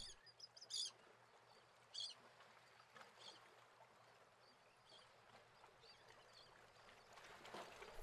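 Near silence, broken by a few faint, short high chirps of birds, the clearest in the first few seconds.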